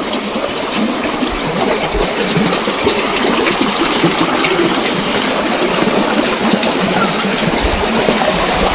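Steady rushing of flowing water, a small stream or channel running close by.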